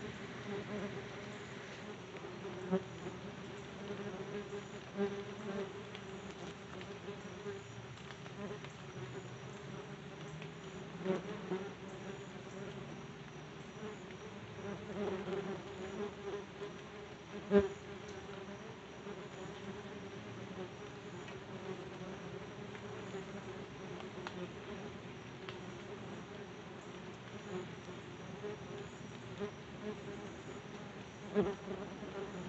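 Yellow jackets buzzing around the phone's microphone: a steady wingbeat drone that swells as individual wasps fly close, with a few sharp ticks, the loudest about two-thirds of the way through.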